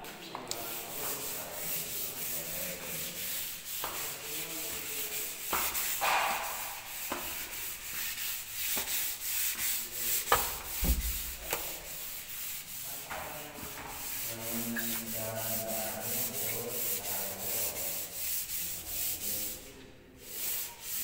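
Wooden stair handrail being rubbed down by hand, a sanding-like scrape repeated in quick, even strokes.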